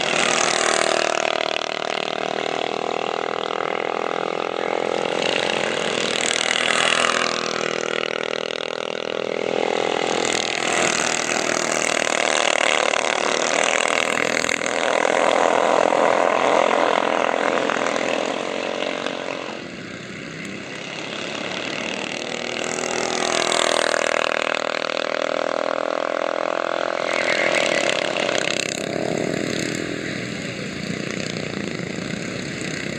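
Several racing go-kart engines passing in waves, their pitch sliding up and down as the karts accelerate and slow through the corners, loudest about halfway through.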